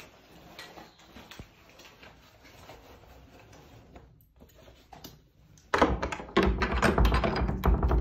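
A few faint clicks over quiet room tone, then about six seconds in a sudden loud run of rattling and knocking as a key is worked in the metal lock of a heavy wooden door.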